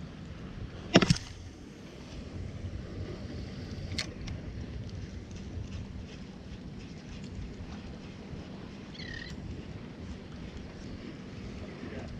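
Steady wind and water noise around a small boat on calm open water, with wind buffeting the microphone. There is a loud sharp knock about a second in and a fainter click around four seconds.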